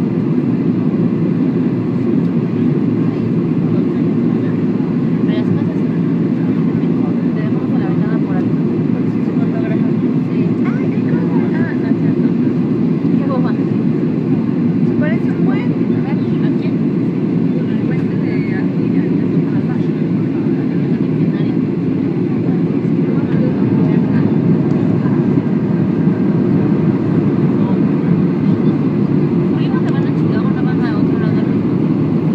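Steady low roar of an airliner cabin in flight: engine and airflow noise heard from a window seat, with faint passenger voices underneath.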